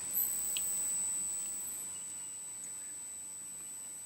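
A steady high-pitched electronic whine over faint hiss, slowly fading a little, with no speech.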